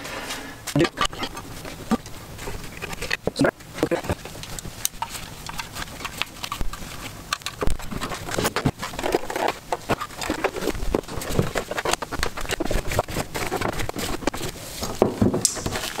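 Plastic instrument cluster being handled and fitted back together by hand: an irregular run of small clicks, knocks and rattles as the parts are pressed and set into place.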